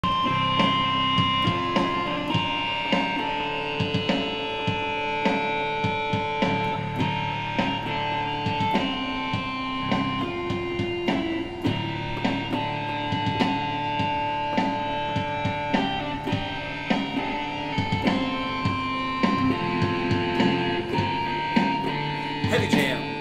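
Electronic keyboard being played, held notes over a steady drum beat.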